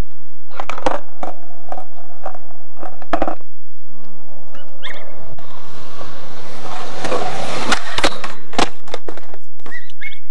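Skateboard on concrete: a string of sharp clacks and knocks, a longer rushing stretch in the middle, then several hard impacts near the end as the board gets away from the rider on a bailed trick at a handrail.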